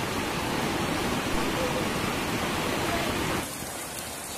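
Steady, loud rushing water noise, as of heavy rain or floodwater, which cuts off abruptly about three and a half seconds in to a quieter hiss.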